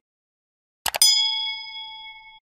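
Two quick clicks about a second in, then straight away a bright bell ding that rings on and fades. This is the click-and-chime sound effect of a subscribe-button animation clicking the notification bell.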